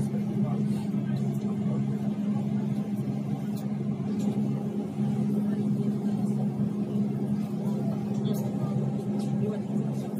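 Steady low hum of a public transport vehicle heard from inside while it stands still or creeps along, with faint voices in the background.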